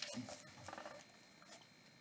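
Faint rustling and soft taps of a hardcover book being handled, dying away to near silence after about a second.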